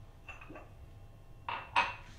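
A glass mug knocking against a stone countertop as it is handled: a couple of faint clinks, then two sharp knocks near the end, the second the loudest.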